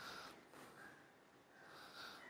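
Near silence: faint background noise with a few soft, short sounds.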